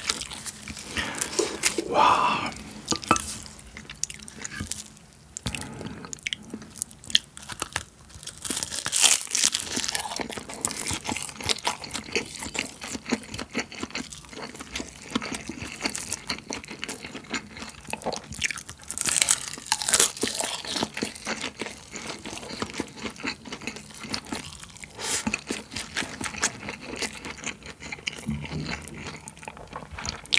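Close-miked eating sounds: crisp roasted seaweed (gim) crunching, then chewing of a mouthful of rice and Spam wrapped in it. Many short crunches, with louder bursts about a third and two-thirds of the way through.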